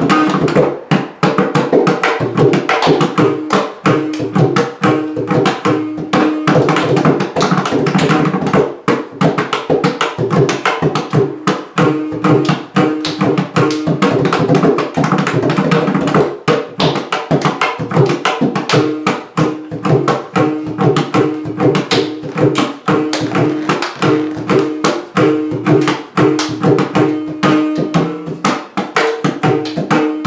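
Mridangam playing a korvai in the Simhendramadhyamam tala: a dense run of rapid hand strokes, with the tuned right head ringing at a steady pitch between strokes.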